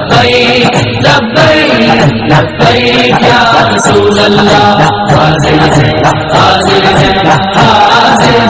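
Loud devotional Urdu/Hindi song in praise of the Prophet, chant-like singing over musical accompaniment, playing steadily without a break.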